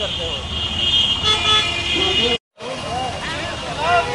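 Roadside traffic noise, with a vehicle horn held as a steady high tone through the first second and a half, under indistinct voices. The sound cuts out completely for a moment about two and a half seconds in, then voices return.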